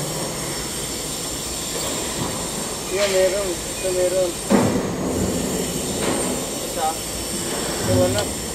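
Steady mechanical noise from an Isuzu 3AD1 three-cylinder diesel engine, with a sharp knock about four and a half seconds in.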